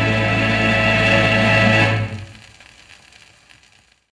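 Closing held chord of a 78 rpm shellac record of Scottish song, played on a turntable. It cuts off about two seconds in and fades to a faint hiss.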